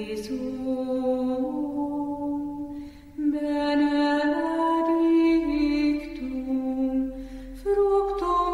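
Slow sung chant in the background: long held vocal notes moving gently from pitch to pitch, with a short pause between phrases about three seconds in.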